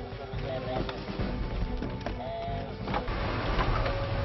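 Dramatic film score over vehicle engines running, with a few sharp knocks of car doors shutting, one about a second in and two close together near the end.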